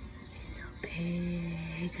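A person calling a drawn-out "hey", one steady held note of about a second that starts near the middle and lifts slightly at the end.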